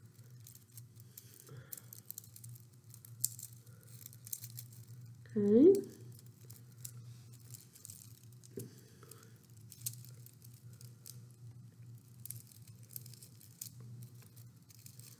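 Faint rustling and crinkling of paper being handled as curled paper petals are wrapped tightly around a glued stem, with scattered light clicks, over a steady low hum.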